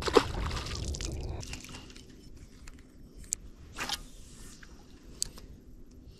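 A small largemouth bass dropped back into the water: a sharp splash just after the start, with about a second of splashing and handling noise. Then it is quieter, with a few faint clicks and a short rustle.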